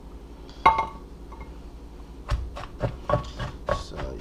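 A single clink with a short ring as a bowl is moved, about half a second in. From about halfway, a wooden pestle pounds in a mortar, roughly three strikes a second, smashing chili peppers and mushrooms.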